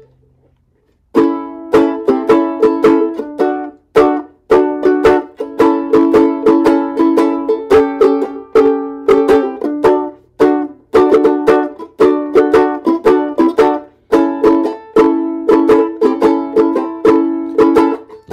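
Banjo ukulele strummed in a steady rhythm of bright chords, the instrumental intro of a song, starting about a second in.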